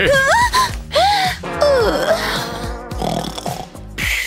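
Wordless human vocal sounds over background music: a rising moan, then a short rise-and-fall, then one long falling moan about two seconds in.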